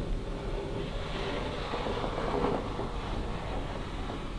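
Planchette sliding across a wooden Ouija board under the players' fingers, a continuous rubbing scrape that grows louder a little after a second in and eases off toward the end.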